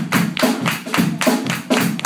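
A live reggae-ska band playing an instrumental passage, with electric guitars, organ and drums keeping an even beat of about four strokes a second.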